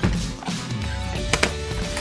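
Background music, with a sharp double click about a second and a half in as a metal latch on the art-set carry case is snapped open.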